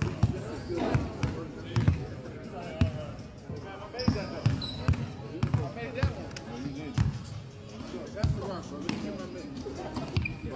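A basketball being dribbled on an indoor court floor, single bounces at uneven intervals of about a second, under people talking.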